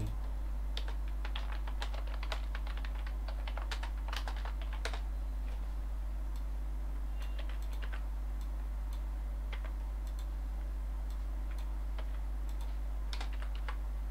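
Computer keyboard typing in quick runs of keystrokes. It is busiest in the first five seconds, with scattered strokes later and another short run near the end, over a steady low hum.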